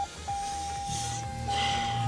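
A steady high electronic tone sounds throughout. A low hum comes in about a second in, with short breathy hisses.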